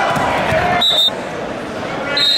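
A short, high referee's whistle blast a little before halfway through, over crowd chatter in a gym hall; the whole sound drops abruptly just after it.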